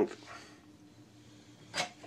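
Quiet small room with a faint steady hum; near the end, one short breathy burst, a person exhaling sharply.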